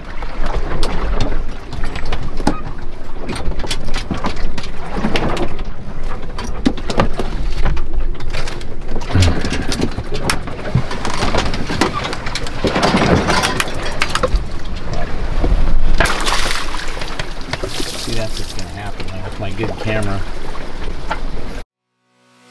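A small sailboat in a gale: wind buffeting the microphone and rough seas rushing and breaking around the hull, with knocks and clatter as the boat pitches. The sound surges several times and cuts off suddenly near the end.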